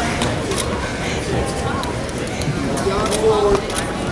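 Overlapping voices of spectators and coaches calling out in a large gym hall, with one louder, held call a little after three seconds in.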